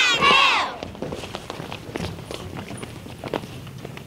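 A group of young children's voices calling out together for a moment at the start, then light scattered footsteps and shuffling on a wooden stage floor as the children move into new places.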